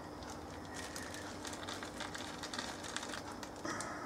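Beer wort at a rolling boil in a stainless steel kettle, a steady boiling noise, with faint crackles of a clear plastic bag of hops being handled and opened over it.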